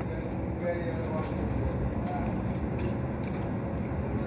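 Steady low background rumble, with a few faint clicks and rustles as food is handled at the table.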